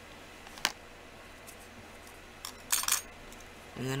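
A single sharp click about half a second in, then a short run of small, bright metallic clinks near the three-second mark: small metal objects being handled and set down on a work surface.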